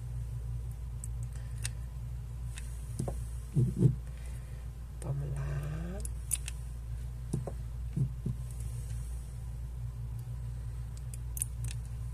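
Small clicks and knocks from a hot glue gun being worked along the back of a glittered appliqué, with two louder knocks about four seconds in, over a steady low hum. A short murmur of voice comes about five seconds in.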